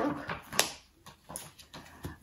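Hardback books being handled: one sharp tap about half a second in, then a few faint knocks and rustles.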